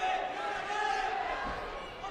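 Indistinct crowd voices and shouts in a gym, fading slightly over the two seconds.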